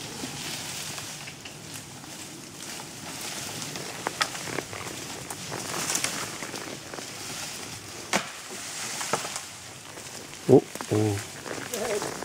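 Horses walking through fallen branches and dense undergrowth: a steady rustle of leaves brushing against horse and rider, with sharp twig snaps now and then. A voice calls out near the end.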